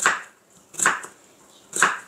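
Kitchen knife slicing through a raw potato onto a wooden cutting board: three cuts, about a second apart.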